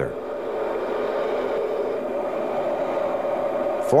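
Steady, unbroken jet aircraft engine noise, as of a jet in flight, holding an even level.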